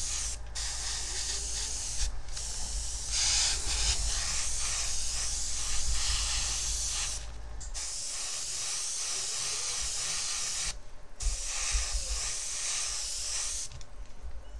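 Airbrush spraying acrylic metallic silver paint, a steady hiss of air that stops and restarts four times as the trigger is released, with a low hum underneath.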